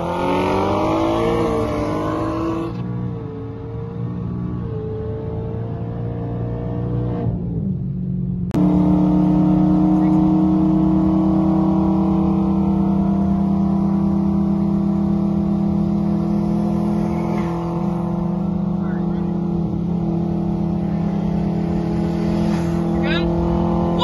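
Performance car engines pulling hard at highway speed, heard from inside one car's cabin. The engine note climbs in pitch over the first couple of seconds. About eight and a half seconds in it gets suddenly louder and holds as a steady drone.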